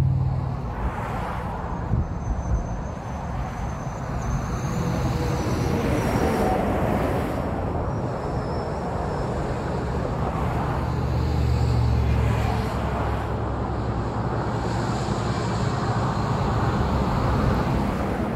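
Road traffic noise: a steady hum of passing cars, with a deeper rumble swelling and fading about two-thirds of the way through.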